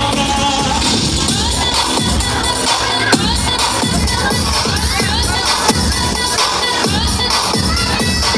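Loud dance music with a steady beat, and a crowd cheering and shouting over it.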